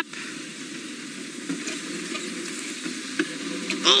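Open safari vehicle driving slowly through the bush: a steady crackling hiss of the engine and tyres moving over the ground.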